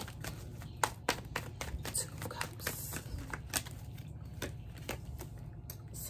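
A tarot deck being shuffled by hand: a run of irregular light clicks and flicks as the cards slap against each other.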